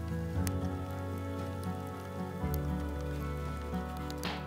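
Background music with held low notes over the crackle and pops of wood burning in a fireplace.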